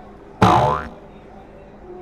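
A sudden, loud, short pitched sound a little under half a second in, lasting about half a second and gliding down in pitch before cutting off.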